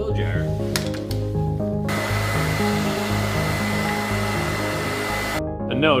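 Handheld hair dryer switched on about two seconds in, running with a steady rushing blow and a thin high whine for about three and a half seconds, then switched off abruptly.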